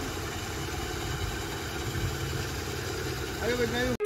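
Motor scooter engine idling steadily, with short vocal sounds near the end.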